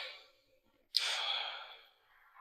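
A person sighing: a long breath out starts sharply about a second in and fades away, after the tail of an earlier breath.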